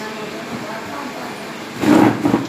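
Faint, indistinct voices, then a short loud vocal burst near the end.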